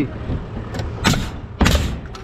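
A few short knocks or scrapes, the longest near the end, over a steady low rumble.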